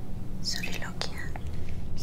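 A person whispering a short aside, "What is she, soliloquizing?", with a low steady hum underneath.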